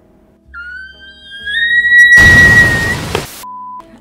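Edited-in comic sound effects: a whistle that rises in pitch and then holds for about two seconds, a loud burst of noise like a bang over its end, then a short steady beep.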